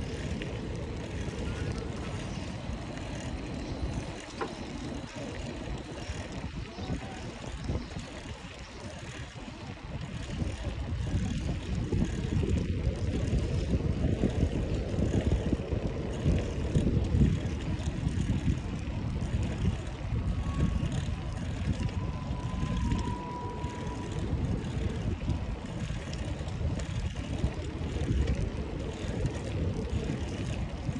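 Low, uneven rumble of wind buffeting the microphone of a handlebar-mounted camera on a moving bicycle, mixed with the bicycle's tyres rolling over brick paving. It gets louder from about a third of the way in.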